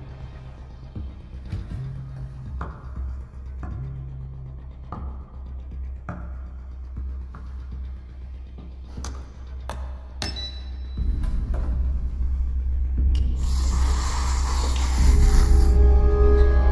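Tense film score: a steady low drone under scattered soft clicks and hits, swelling louder in the last few seconds.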